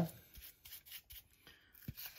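A bristle paintbrush scrubbing inside the bore of a Fiat Grande Punto throttle body, around the butterfly valve held open, in faint, irregular scratchy strokes. The brush is scouring off oily deposits loosened by solvent.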